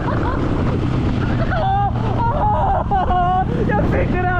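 Dirt bike engine running at road speed under heavy wind noise on the helmet-camera microphone. From about a second and a half in, voices talking or laughing over the engine.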